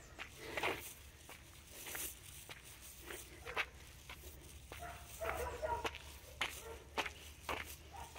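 Footsteps on a dirt road, faint and regular at about two steps a second, with a faint distant call about five seconds in.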